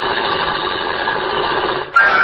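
Radio-drama sound effect of a car engine running steadily. It breaks off sharply just before the end, giving way to a music bridge.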